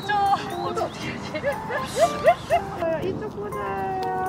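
Small dog whining and yipping, several short rising whines close together around the middle.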